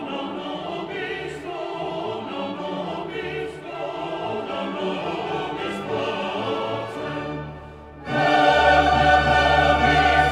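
Mixed choir and orchestra performing the Agnus Dei of an 18th-century Bohemian Mass setting, with sustained sung lines over strings. The music thins and softens shortly before eight seconds in, then the full choir and orchestra enter loudly.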